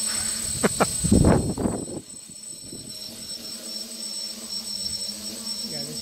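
Crickets chirring steadily and high-pitched, with the hovering quadcopter's motors humming faintly beneath. Near the start come two short clicks, then a loud rumbling burst of noise lasting about a second.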